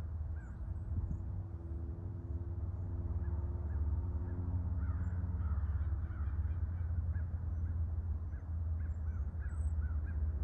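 Birds calling, a short arched call repeated over and over, above a low steady rumble that grows gradually louder.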